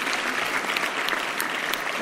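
Congregation applauding steadily, a dense clatter of many hands clapping.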